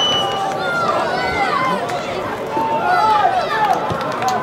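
Several men's voices shouting and calling over one another, short rising-and-falling shouts that grow busier in the second half, over a steady outdoor crowd noise at a football match.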